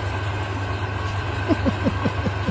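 Steady low machine hum, like a motor running. About halfway through, a quick run of short falling blips joins it, several a second.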